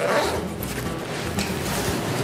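A zipper being pulled around a padded fabric camera bag to open it, over steady background music.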